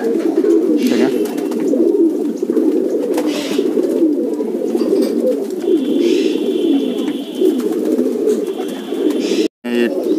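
A flock of domestic pigeons cooing together, many overlapping calls making one continuous chorus. The sound cuts out briefly near the end.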